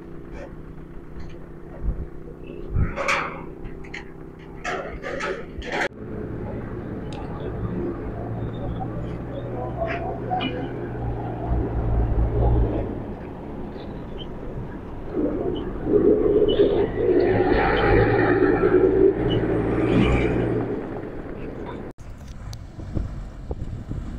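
Engines of heavy trucks loaded with containers running as a convoy drives past on a dirt track. There is a low rumble throughout, and it grows loudest for several seconds in the second half as trucks go by.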